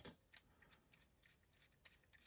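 Near silence, with a few faint plastic clicks from a LEGO Technic drive shaft and joint being turned by hand, the clearest about half a second in and another near the end.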